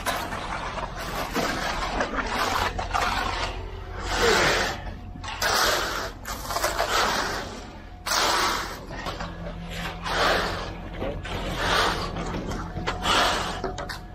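Straightedge screed board dragged through wet concrete, a rough scraping swish with each stroke, about one stroke a second, over a steady low hum.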